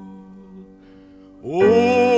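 A sung song: the accompaniment holds a steady chord while the voice rests, then the singer comes back in loudly with a wavering vibrato about a second and a half in.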